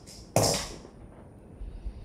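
A single sudden burst of noise about a third of a second in, dying away within about half a second, followed by low room hiss.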